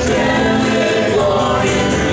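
Live band playing a song, with several voices singing together over strummed acoustic and electric guitars and hand drums.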